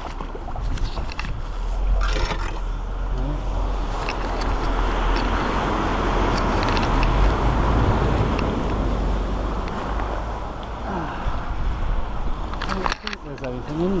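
A car driving through deep floodwater, its wheels throwing up a wave of splashing water. The rushing splash builds from about four seconds in, is loudest a few seconds later and fades away again.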